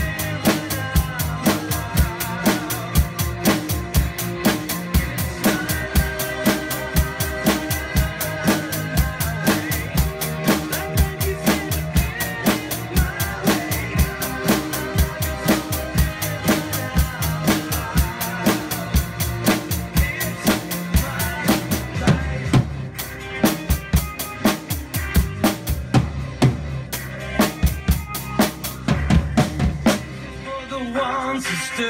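Acoustic drum kit played to a steady beat on bass drum and snare, along with a recorded pop song's backing track. About three-quarters of the way through the bright cymbal sound drops away, leaving sparser drum hits.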